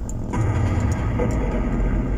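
Car engine and road rumble heard from inside the cabin as the car pulls out onto the road and picks up speed; the low rumble steps up slightly about a third of a second in.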